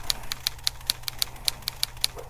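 Typewriter keystroke sound effect: a quick, even run of about a dozen sharp clicks, roughly six a second, one per letter of on-screen text being typed out.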